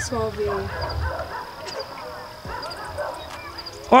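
Indistinct voices, loudest in the first second, over a steady thin high-pitched whine.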